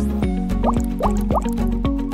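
Background music with a steady beat, with three short upward-sliding tones about a second in.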